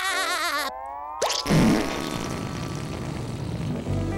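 Cartoon sound effects: a wavering tone, a quick rising glide about a second in, then a long hiss of air escaping as a character's head deflates flat, with a faint slowly falling tone under it.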